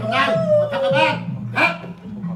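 A woman's long, wavering wail, held for about a second before it breaks off, followed by short crying outbursts.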